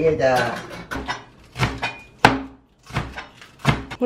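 A few separate sharp knocks of a knife on a cutting board as water spinach (kangkung) is cut, the loudest a little past halfway, following a brief voice at the start.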